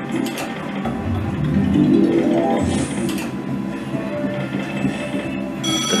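Merkur slot machine's electronic free-spin game sounds: a win tally jingle while a line of kings pays out, with ratcheting, clicking tones, then the reels spinning into the next free game near the end.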